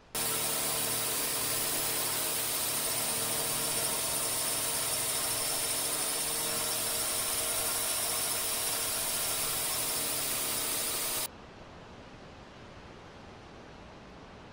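Loud steady motor noise with a constant hum under a hiss, starting abruptly and cutting off suddenly about eleven seconds in, after which only faint background noise remains.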